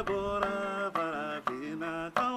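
Chant-like singing in long, held notes that bend in pitch, over a plucked ngoni, a West African lute with a skin-covered body, sounding a few sharp plucks about every half second.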